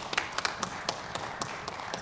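Audience applauding: many scattered hand claps over a steady patter.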